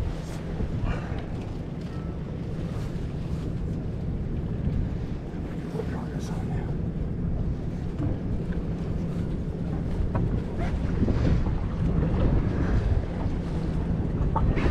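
Wind buffeting the microphone on an open boat, a steady low rumble.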